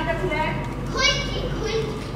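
Children's voices speaking dialogue in a play, high-pitched and picked up in a hall, in two short stretches, with a steady low hum underneath.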